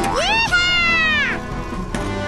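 A single high, meow-like call, about a second long, that rises, holds and then falls away, over background music.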